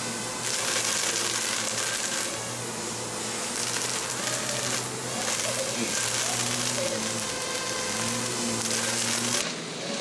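Hiss of water spray coming in surges over the motors of a small FPV racing quadcopter, whose whine wavers in pitch. The sound drops and changes abruptly near the end.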